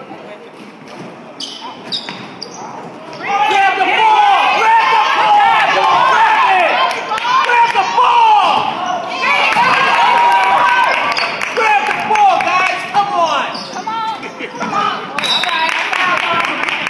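Basketball bouncing on a hardwood gym floor. From about three seconds in, many spectators shout and cheer loudly over the game.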